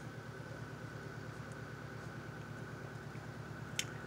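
A steady low hum with a faint, thin, steady high whine over it, and one small click near the end.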